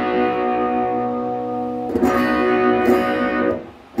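Electric guitar played through a breadboarded OCD-clone overdrive circuit with MOSFET clipping: a chord rings on, a second chord is struck about halfway through, and it is cut off shortly before the end.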